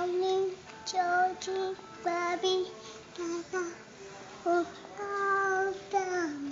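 A toddler's voice in a high singsong chant, a run of short syllables, some drawn out on a held pitch.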